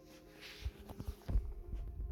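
Handling noise: a few dull knocks and bumps, then a low rumble, as a plastic transmission filter is handled close to the microphone.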